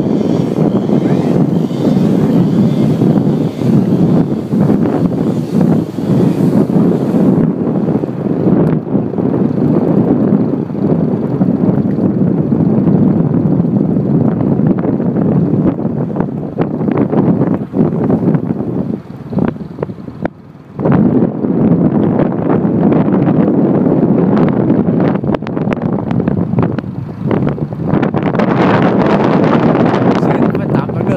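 Loud, steady wind rushing over the microphone on a moving motorbike, with the bike's running noise beneath it. It drops away briefly about two-thirds of the way through, then comes back.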